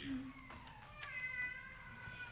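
Faint hummed starting pitches for an a cappella choir: a brief low note, then a higher note held and sagging slightly in pitch.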